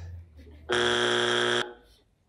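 Game-show buzzer: one steady electronic buzz lasting about a second, starting a little way in and cutting off suddenly.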